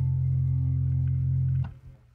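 Final chord of a song on guitar and bass, held steady and ringing, then cut off about three-quarters of the way through.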